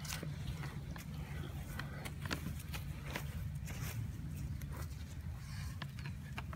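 Gloved hands backfilling a planting hole, scooping and pushing loose soil around a tree's root ball: irregular scrapes and crumbles of earth, over a steady low hum.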